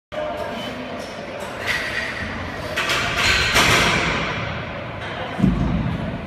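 Heavy barbell deadlift in a large gym room, with voices and music in the background and a low thud about five and a half seconds in.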